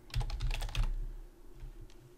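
Typing on a computer keyboard: a quick run of keystrokes in the first second, then a couple of single taps near the end.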